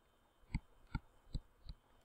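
Faint taps of a stylus pen on a tablet while handwriting: four short knocks about 0.4 s apart.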